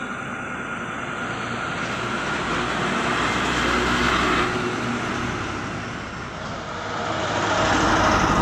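Heavy goods trucks passing close by one after another, their engine and tyre noise swelling to a peak about four seconds in, easing off, then building again near the end as the next truck goes by.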